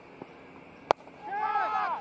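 A single sharp crack of a cricket bat striking the ball just under a second in, followed by a loud shout from a player.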